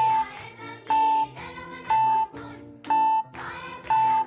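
Countdown timer sound effect beeping about once a second, five short steady beeps, over light background music.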